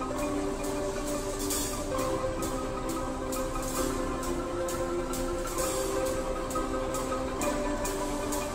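Marimba band playing a tune on several marimbas, with a drum kit keeping a steady beat of about three strokes a second.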